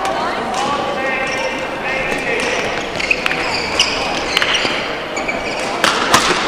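Echoing badminton-hall sound: sneaker squeaks on the court floor, sharp clicks of rackets hitting shuttlecocks, and voices, with the sharpest hit near the end.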